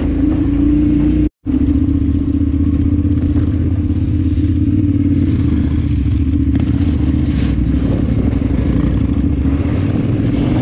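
Adventure motorcycle engine running steadily while riding a gravel track, heard loud from on board. The sound cuts out completely for an instant about a second in.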